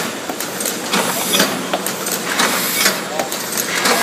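Doner kebab paper box forming machine with heat sealing running: sharp mechanical clicks and knocks several times a second over a steady low hum.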